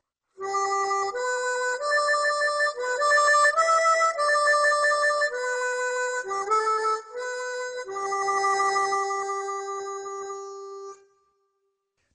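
Suzuki Pipe Humming diatonic harmonica played solo, its tubular cover plates cupped in the hands for the wah-wah, hand-tremolo 'baked bean sound'. It runs through a short melody of single notes and ends on a long held low note that fades out near the end.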